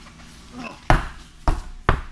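Large off-road mud tires being pulled off a stack and handled, giving three sharp thuds about half a second apart starting about a second in.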